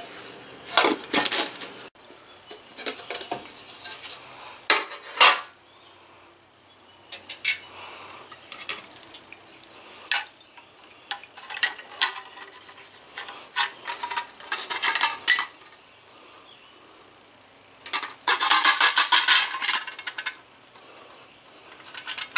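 Metal dip basket holding a lawn mower carburetor clinking and rattling against the rim of a can of carburetor parts cleaner as it is lifted by its wire handle. A string of sharp separate clinks, with a longer rattle near the end.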